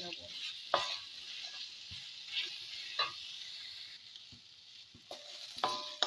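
Spatula stirring and scraping spices and garlic frying in oil in a wok, over a steady sizzle. A few sharper scrapes of the spatula on the pan stand out; the sizzle eases briefly near the end.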